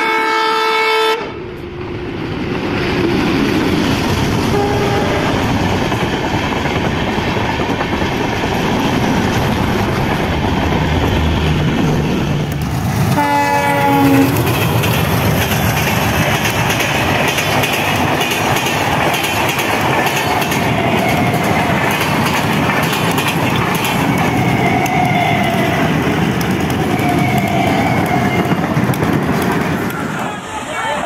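Indian Railways train horn sounding and cutting off about a second in, then a passenger express train passing close at speed with a steady rush and clatter of wheels on rail. A second horn blast, dropping slightly in pitch, comes about 13 seconds in.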